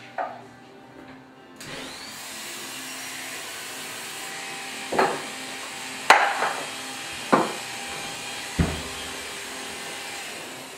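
Electric hair clipper switched on a little under two seconds in and running with a steady buzz. Four sharp clacks come over the second half as it is handled.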